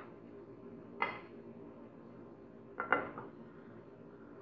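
A frying pan knocking against the stovetop as it is tilted to spread the oil: a sharp knock about a second in and a quick double knock near the end, each ringing briefly.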